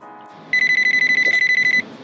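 Telephone ringing: one trilling electronic ring, high-pitched with a fast flutter, starting about half a second in and lasting just over a second, as the dialled call reaches the other phone.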